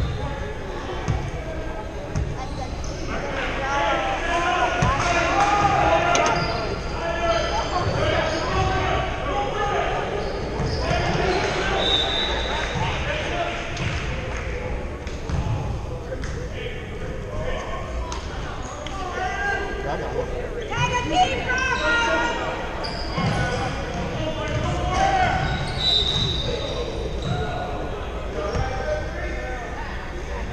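Basketball game in a large gym: a basketball bouncing on the hardwood court, with players and spectators talking and calling out indistinctly, all echoing in the hall.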